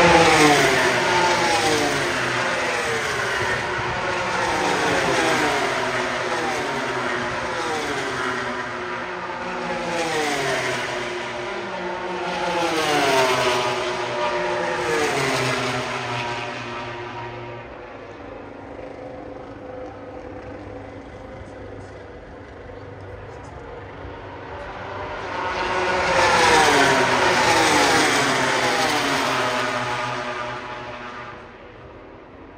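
MotoGP race bikes' 1000cc four-cylinder engines at high revs as they pass on the track, the pitch dropping again and again in quick successive sweeps. The sound fades for several seconds past the middle, then another bike comes in loud and passes near the end.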